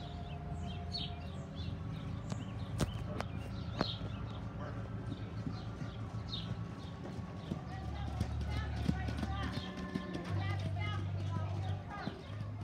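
A show horse trotting on a dirt arena, its hoofbeats coming as a run of dull clip-clops, with a few sharper knocks about three to four seconds in.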